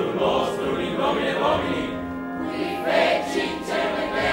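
Live opera performance: a chorus singing a church-style chant with orchestra, the voices swelling louder in the second half.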